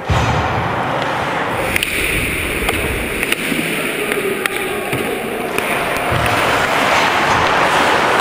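Ice hockey play heard from the ice: a steady rush of skating noise with a few sharp clicks of sticks and puck between about two and five seconds in.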